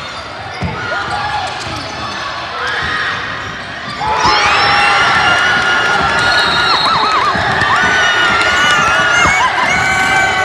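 Indoor basketball game: the ball bouncing and sneakers squeaking on the hardwood gym floor, then the crowd cheering and shouting loudly from about four seconds in.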